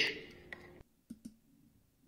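The end of a rapped line fading out, then near quiet with a few faint, short clicks.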